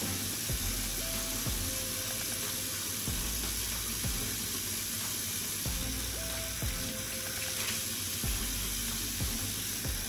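Bathroom sink tap running steadily into a ceramic basin while a ceramic soap dispenser is rinsed and scrubbed with a sponge under the stream. Soft background music with a low beat plays underneath.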